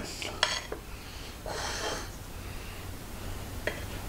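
A knife cutting soft chocolate fudge on a ceramic plate, with a few faint clicks of the blade against the plate near the start and again near the end, and a soft scraping about a second and a half in.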